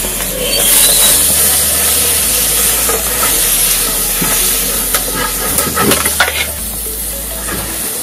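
Red-hot steel knife blade sizzling and hissing as it cuts through a plastic cup of jelly, boiling the juice to steam. There are a few sharp crackles about five to six seconds in.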